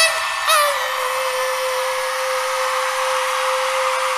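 Concert crowd screaming and cheering, with one steady note held underneath. The singer's last sung phrase ends within the first second.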